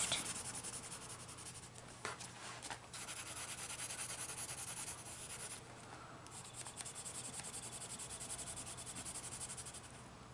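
Pale blue Kalour coloured pencil scratching across paper in quick, short shading strokes, with a light tap about two seconds in and a brief pause a little past halfway.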